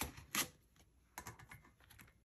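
Light clicks and taps of plastic planner inserts and paper pages being handled and laid onto the open metal rings of a ring-bound planner binder. There are two sharp clicks at the start, then a cluster of lighter clicks a little over a second in.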